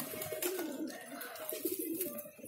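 Several domestic pigeons cooing together in a low, continuous murmur.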